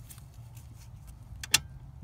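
A single sharp metallic click about one and a half seconds in, over a low steady hum, as the steering shaft's universal-joint yoke is worked on its splined shaft.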